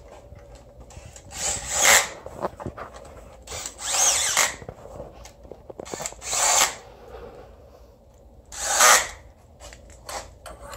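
A ratchet wrench is run in four short bursts, each under a second, as it drives down the bolts holding a water manifold onto an engine block.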